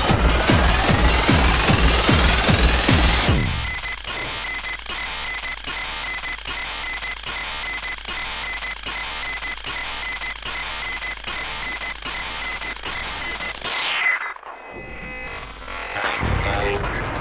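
1990s acid tekno played from vinyl: a driving kick-drum beat with a rising synth sweep, then about three seconds in the kick drops out, leaving fast hi-hat ticks and a steady high tone. Near the end a falling sweep and a brief dip lead into the kick coming back.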